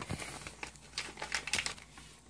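Clear plastic parts bag crinkling in irregular bursts as it is handled and opened.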